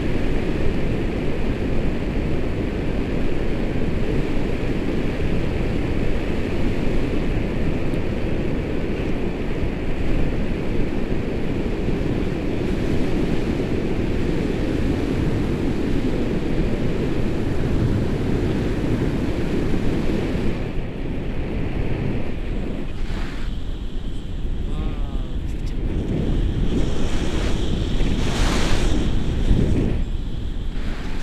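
Steady rush of wind buffeting the microphone from the airflow of a tandem paraglider in flight, easing a little past the middle and gusting up again near the end.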